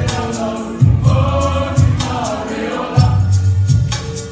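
A mixed choir of men's and women's voices singing a church song in harmony over a backing with low bass notes about once a second and a steady percussive beat.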